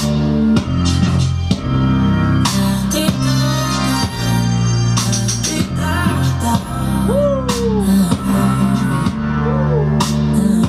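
A UK R&B track playing, led by a bass guitar line over a steady beat.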